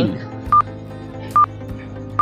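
Quiz countdown timer sound effect: two short, identical electronic beeps a little under a second apart, ticking off the seconds over soft background music.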